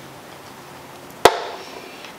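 A single sharp knock of something hard, about a second in, dying away quickly.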